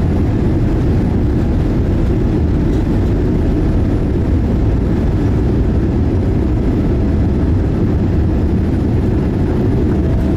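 Steady low rumble inside the cabin of a Boeing 787-8 moving along the ground, heard from a window seat over the wing. It is the aircraft's engines and rolling noise, with no rise in level or pitch.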